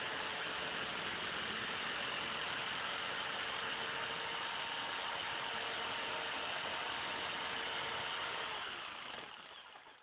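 Electric power tool's motor running steadily while cutting steel threaded rod, then switched off: its hum falls in pitch as it winds down over the last second and a half.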